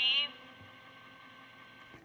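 A voice through a wall intercom speaker says one short word at the very start, then the open intercom line hisses faintly with a thin steady hum.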